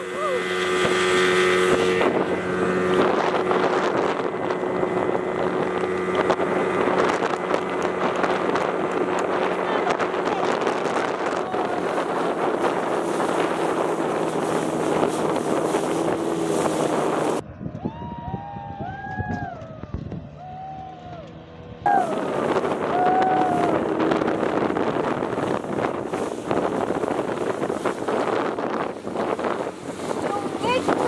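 Speedboat running fast on its 30 hp outboard motor: a steady engine hum under the rush of water and wind on the microphone. A little past halfway it drops for a few seconds to a quieter stretch where people's voices call out, then the loud rush resumes.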